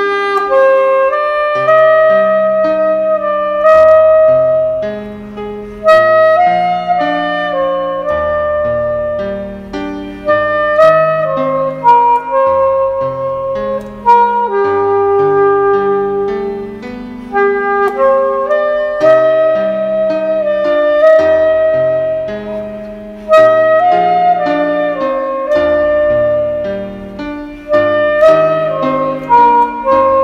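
Soprano saxophone playing a slow melody of long held notes over a backing of sustained low chords.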